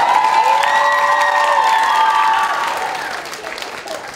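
Audience applauding and cheering in response to a punchline, with held voice-like cheers over the clapping. The applause is loudest in the first half and fades over the last second or so.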